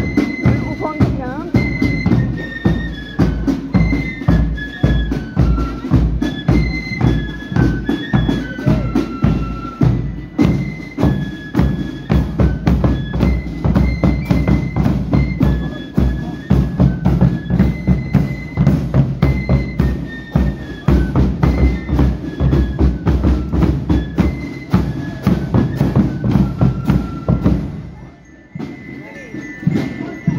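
Marching flute band playing a march: a melody on flutes over a steady beat of bass drum, side drums and cymbals. The band stops about two seconds before the end.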